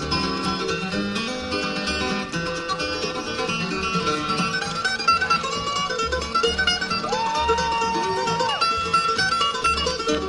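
Live acoustic bluegrass instrumental: flatpicked steel-string guitars and mandolin playing quick runs over a steady upright bass. About seven seconds in, a single long held note slides up, then down again at its end.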